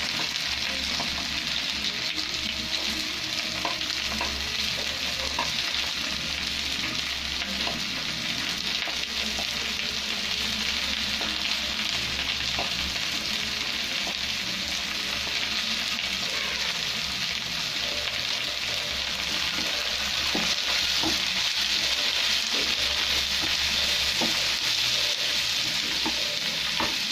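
Sliced red onions sizzling steadily in hot oil in a frying pan, with short scrapes and taps as they are stirred. The sizzle grows a little louder in the last few seconds.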